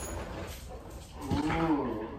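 A woman's drawn-out moan, starting about a second and a half in, rising and then falling in pitch.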